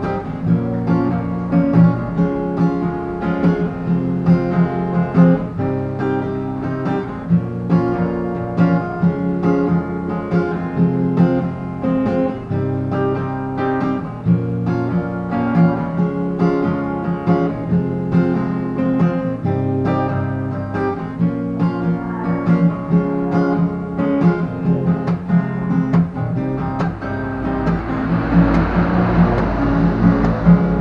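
Acoustic guitar strummed in a steady down, down-up, up-down-up pattern, moving through an Em, Bm, Am, C chord progression. Near the end a rushing noise swells up behind the chords.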